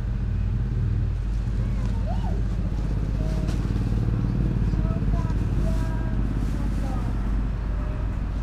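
Steady low rumble of an engine running at idle, with faint voices of people talking in the background.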